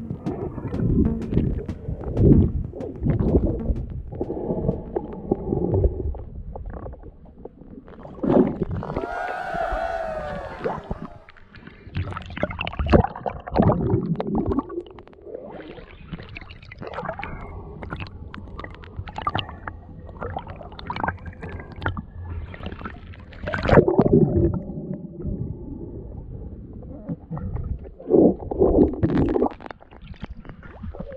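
Water sloshing and gurgling around a camera moving through shallow river water, with irregular splashes and knocks; the loudest surges come a couple of seconds in and again about four-fifths of the way through.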